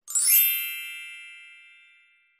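A single bright chime struck once, ringing with several tones together and fading away over almost two seconds.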